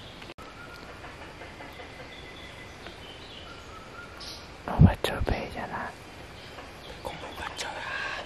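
Faint, short, high, whistled bird-like calls over jungle background. About five seconds in there is a sudden loud low thump with rustling, and a few more calls come near the end.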